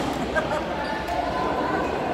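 Badminton rally: sharp strikes of a racket on the shuttlecock, one right at the start and a louder one about half a second in, over steady background chatter from a crowd of players and onlookers.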